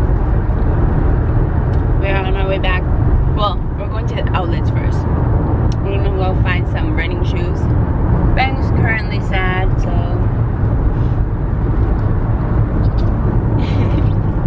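Steady low rumble of road and engine noise inside a moving car's cabin. Voices come and go over it several times.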